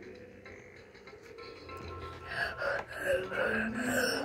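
Battery-powered light-up baby toy playing electronic music, softer at first, with a run of repeated short notes from about halfway.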